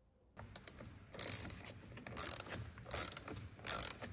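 Socket ratchet wrench clicking in repeated short strokes, about once a second, starting about half a second in, as a car battery terminal clamp nut is tightened on a newly installed battery.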